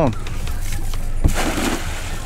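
A thrown cast net hitting the water: a sharp slap a little over a second in, then about half a second of splashing hiss as the weighted lead line and mesh land on the surface.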